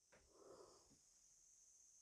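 Near silence, with one faint short puff of noise about half a second in.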